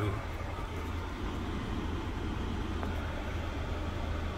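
Steady low hum and rushing air inside a parked 2020 Chevrolet Equinox's cabin, with the engine idling and the climate-control fan blowing.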